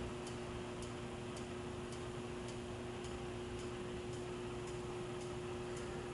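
Quiet steady hum with a faint, regular tick a little under twice a second, from the hydraulic freight elevator and its car at rest with the doors open.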